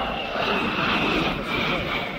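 Jet engines of a formation of aircraft flying past: a steady rushing noise with a high whine that falls slightly in pitch.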